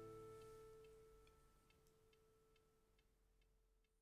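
Closing background music fading out: a held chord dies away to near silence, with a faint steady ticking about twice a second.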